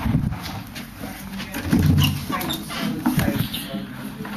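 Indistinct low men's voices, muffled and broken up, mixed with rustling and knocks from a handheld camera being moved about.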